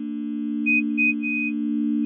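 Synthesized intro drone: a stack of steady electronic tones, strongest low down, slowly growing louder, with a few short high beeps pulsing over it about halfway through.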